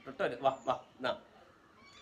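Young kittens mewing: several short, high cries in the first second and another starting near the end.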